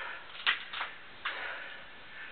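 Handling noise from hands working something small: two short, sharp clicks about half a second in, then a soft rustling hiss.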